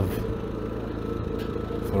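A steady hum at one unchanging pitch, like a motor or engine running, with the tail of a man's word at the start and the start of the next word at the very end.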